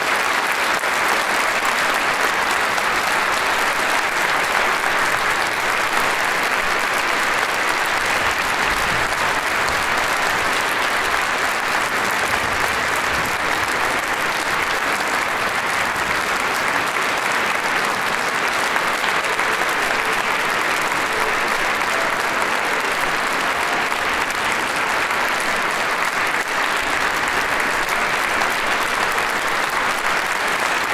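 Audience applauding: dense, even clapping that holds steady throughout.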